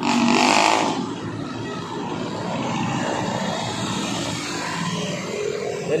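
City street traffic running past, a steady rumble and hiss of passing cars and motorcycles, with a loud rushing noise in the first second.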